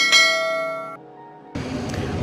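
A bright bell-like chime sound effect rings once and fades over about a second. Street background noise comes in about a second and a half in.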